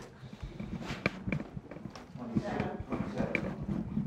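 Quiet, indistinct talk among people close by, with scattered short clicks and knocks.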